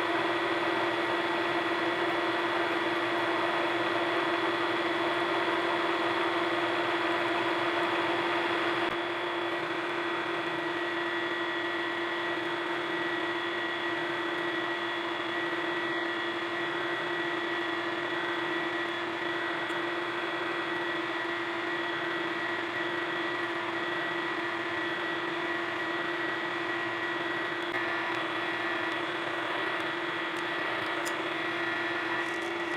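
Vertical milling machine running steadily while a small drill bores into the edge of a metal disc, with a steady hiss from the mist-coolant nozzle at the bit. The overall sound drops slightly about nine seconds in.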